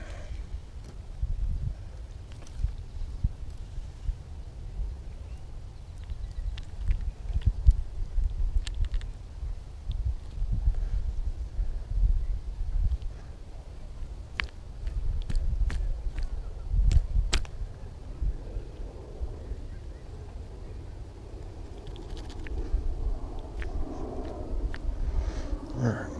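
Handling noise close to the microphone over a low wind rumble, with a scatter of sharp clicks in the middle, as a small bass is held and unhooked by hand and with pliers.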